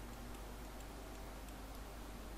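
Faint, sparse clicks over a low steady hum and room noise.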